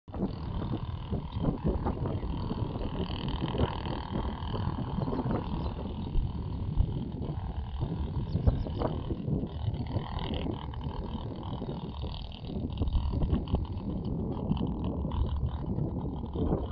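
Wind buffeting the microphone: an uneven, gusty low rumble throughout.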